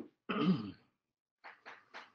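A man clearing his throat, a short rasp followed by a pitched grunt, then a few brief faint sounds.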